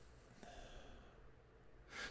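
Near silence: a pause in speech, with a faint breath at the microphone from about half a second to one second in.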